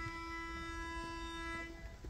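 Pitch pipe sounding one steady, reedy note for nearly two seconds, then cut off: the starting pitch given to an a cappella group before it sings.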